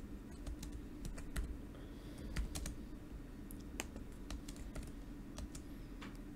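Typing on a computer keyboard: faint, irregular keystrokes scattered throughout, over a low steady hum.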